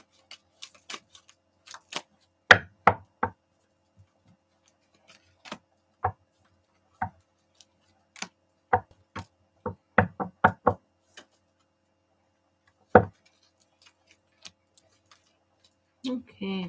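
Tarot cards being dealt by hand onto stacks, making irregular sharp clicks and taps as cards snap off the deck and land, a few louder knocks among them, with a quieter stretch near the end.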